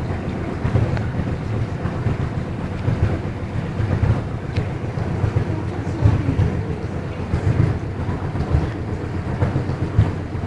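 A small boat's engine running steadily, a low uneven rumble that keeps the same pace throughout, heard inside a canal tunnel.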